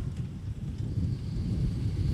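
Low rumble of wind on an outdoor microphone, with a faint steady high whine starting about a second in.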